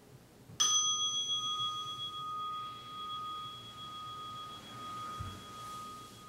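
A meditation bell struck once about half a second in, ringing on with a long, slowly fading tone that marks the end of the meditation period. A soft low thump comes near the end.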